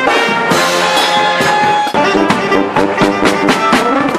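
A live brass band of trumpet, trombone and saxophones over a drum kit, playing funk-Latin music. Held chords for about two seconds, then short punchy repeated notes with cymbal and drum hits.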